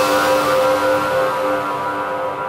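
Tail of a TV station's electronic ident jingle: a held synthesizer chord over a whooshing hiss, slowly fading out.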